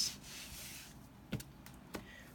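Sleeved trading cards sliding and rubbing against each other and across a playmat: a soft brushing for about the first second, then two light taps.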